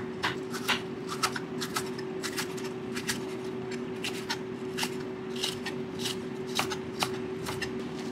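Chef's knife slicing carrot and onion on a wooden cutting board: a steady run of sharp taps as the blade meets the board, about two to three a second. A steady low hum runs underneath.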